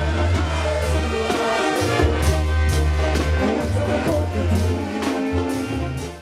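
Sinaloan banda music from a full brass band: a tuba plays a low bass line under brass and a steady drum beat.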